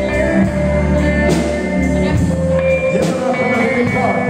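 Live country band playing an instrumental passage: electric guitar and pedal steel guitar over bass and drums, with long held notes and a sliding note near the end.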